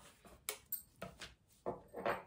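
A few light, separate taps and rustles as a clear plastic pattern-drafting ruler is shifted across a paper sewing pattern on a table.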